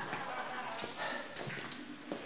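A few faint footsteps on a hard floor and a door handle pressed as a door is opened.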